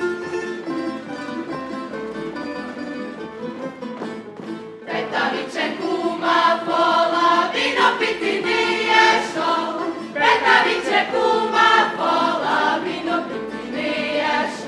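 Međimurje folk song sung in unison by a group of voices, accompanied by a tamburica ensemble. The singing grows louder and fuller about five seconds in.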